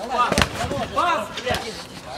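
A football kicked, a sharp thud about half a second in and a lighter one at about a second and a half, with players shouting around it.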